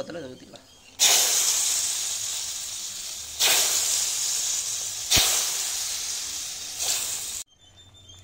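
Hot oil tempering with fried sundakkai vathal (dried turkey berries) poured into simmering tamarind gravy, sizzling loudly. The hiss starts suddenly about a second in, surges twice more as more is poured, fades between surges and cuts off suddenly near the end.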